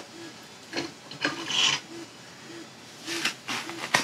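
Short, irregular rubbing and scraping sounds of plastic parts being handled as the resin vat of a resin 3D printer is lifted out of its housing.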